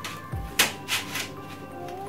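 Background music, with a soft thump and three light clacks in the first half as a flexible magnetic dust filter is pulled off and handled against a steel PC case.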